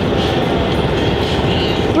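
Steady low rumbling noise with no clear pitch.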